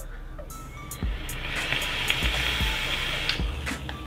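A long hit on an REOS LP Grand squonk box mod fitted with a rebuildable dripping atomizer. Breath and vapour make a steady airy hiss that starts about a second in and lasts about two seconds. The mod is still firing after being run over by a forklift.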